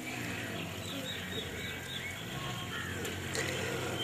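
Faint, short bird chirps repeating every half second or so over low background noise.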